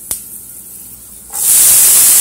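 Chopped onions tipped into hot oil in a frying pan, setting off a sudden loud sizzle about one and a half seconds in that keeps going. Before that there is only a faint sizzle of oil and a single click near the start.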